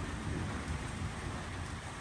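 Steady rain of a thunderstorm with a low rumble of thunder underneath.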